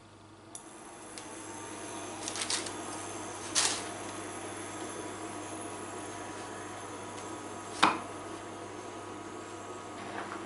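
Portable induction hob switched on under a non-stick frying pan: its fan and electronic whine come up over the first couple of seconds and then run steadily. A few knocks of the pan and dough handling sound over it, with the sharpest knock about eight seconds in.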